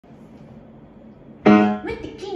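Grand piano: low hiss, then a chord struck about one and a half seconds in, ringing and fading.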